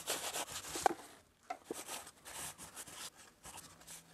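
Gloved hand wiping red wood dye across a maple board: faint, irregular rubbing strokes with a few light ticks.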